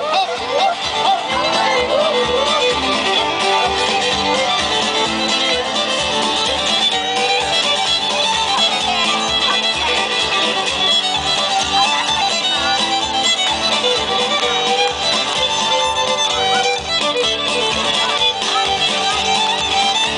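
Live band playing an instrumental passage led by fiddle, over a steady low beat.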